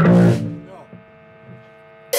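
Rock band playing, cutting off about half a second in, leaving a steady electrical mains hum from the band's gear.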